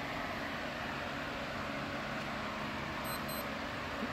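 Steady low hum and hiss of background room noise, with no distinct events.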